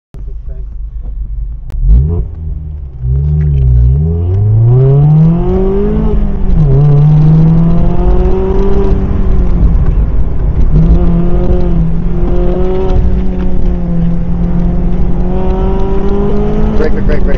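Mazda MX-5 Miata (ND) four-cylinder engine pulling away hard from a start, its pitch climbing for several seconds and then dropping at an upshift about six seconds in. After that it holds fairly steady, dipping and rising again as the throttle is lifted and reapplied.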